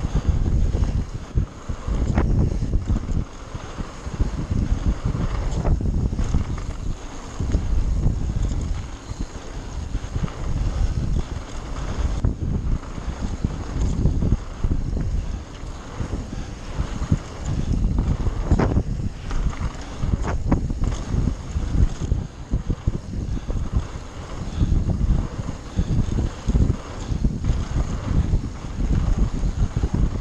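Wind buffeting the microphone of a mountain-bike-mounted camera at speed on a dirt singletrack descent, over an uneven rumble of tyres and bike rattling on the rough ground. A few sharper knocks come through as the bike hits bumps, near the start and again about two-thirds of the way through.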